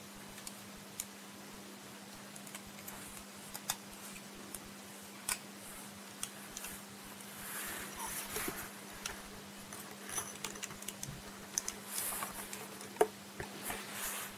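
Light clicks and rustles of plastic model-kit parts being handled, as the pieces of a snap-fit club weapon are pressed together and fitted to the figure; the sharpest click comes about a second before the end. A faint steady hum runs underneath.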